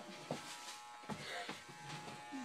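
Electric hair clippers running with a steady hum while cutting hair.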